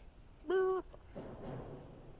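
Square ND filter being slid into a lens filter holder, stacked in front of another filter: a short steady tone about half a second in, then a faint scrape.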